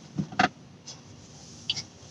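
A few short, soft mouth clicks and lip smacks close to the microphone. Two come in the first half-second and fainter ones follow later, over quiet room tone.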